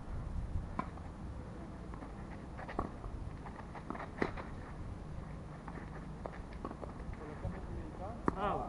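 Tennis ball struck by rackets during a rally, several sharp pops a second or two apart, the loudest about four seconds in, with footsteps scuffing on the clay court over a low wind rumble on the microphone.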